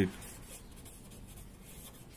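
Pen writing on paper: faint scratching strokes of the pen tip.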